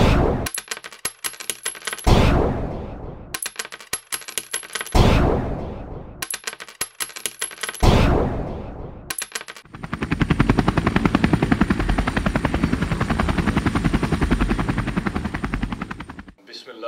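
Intro sound-effect track: four heavy booms about three seconds apart, each followed by a scatter of quick clicks, then about six seconds of fast, even rattle that stops abruptly.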